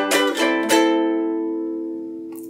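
Ukulele strummed on a G major chord: a few quick strums, then the chord left ringing and slowly fading.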